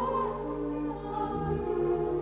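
Operatic singing with orchestral accompaniment: a soprano voice holds a high note at the start, and sustained lower vocal and orchestral lines carry on through the rest.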